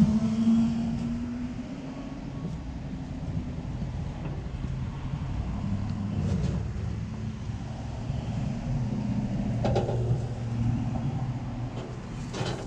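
Low, steady rumble of traffic from a heavy vehicle's engine running, with a couple of brief knocks about six and ten seconds in.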